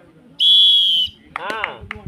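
A referee's whistle blown in one steady blast lasting about two-thirds of a second, followed by a short shout.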